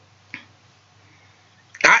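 Quiet room tone with a faint low hum, broken by a single short click about a third of a second in; near the end a man starts speaking.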